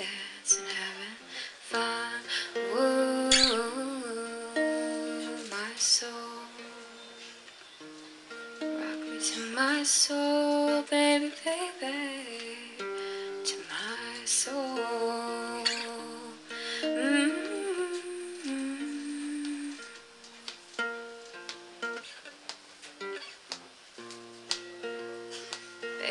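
Acoustic guitar played live through a small PA in an instrumental passage of a song, with a wordless vocal line gliding over the plucked notes.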